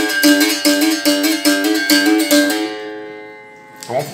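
Berimbau played with the stone pressed against the wire right after each stroke of the stick, the 'bater e encostar' stone effect. A quick run of strokes alternates between two close notes, with the caxixi rattling along. About two and a half seconds in the playing stops and the last note rings out and fades.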